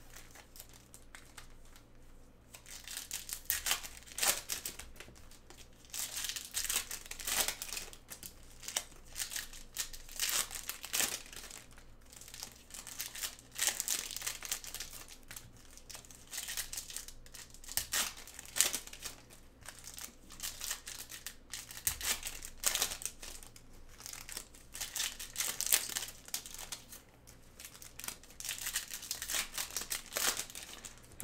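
Foil trading-card pack wrappers crinkling and tearing as packs are opened, in irregular bursts that go on almost without a break from about three seconds in.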